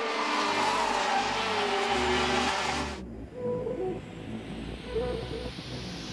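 Racing karts' two-stroke IAME X30 engines running at high revs, their pitch falling, for about three seconds, then cutting off abruptly. A quieter stretch follows with a rising whoosh that leads into music.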